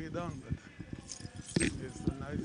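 Brief snatches of men's voices in conversation, over light clicking and rustling.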